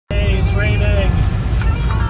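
Car cabin road noise, a steady low rumble of a moving car heard from inside. A voice sounds briefly in the first second, and held music notes come in near the end.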